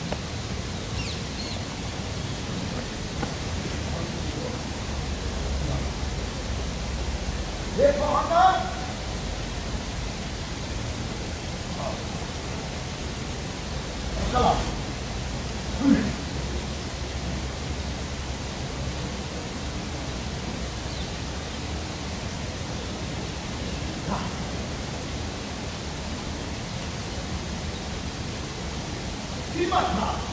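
A few short shouted vocal calls, some sliding up in pitch: a pair about eight seconds in, two more a little past halfway, and one at the very end. Under them is a steady rumbling background noise.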